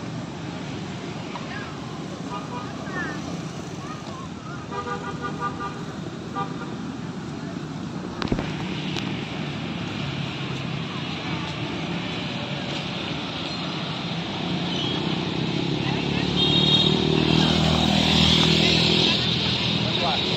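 Motorbike and car traffic passing on a town street, with a vehicle horn sounding briefly about five seconds in. The traffic gets louder near the end as vehicles pass close by.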